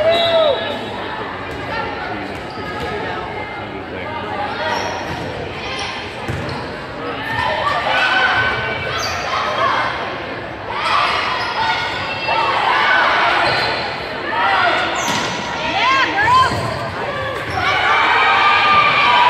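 Volleyball rally in a school gym: the ball is struck with sharp smacks, and sneakers squeak on the hardwood floor, several squeaks coming close together near the end. Players' and spectators' voices ring through the large, echoing hall.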